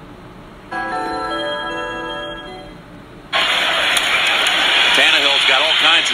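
A held musical chord starts about a second in and fades away. Then, just past the halfway point, TV football broadcast audio cuts in loudly: a stadium crowd's steady noise with a commentator's voice over it.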